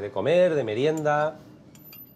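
A man's voice speaking for about a second, then a quieter stretch.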